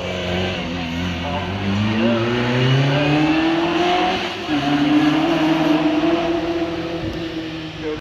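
Vintage single-seater racing car's engine accelerating hard, its pitch climbing, with one upshift about four and a half seconds in, after which it climbs again.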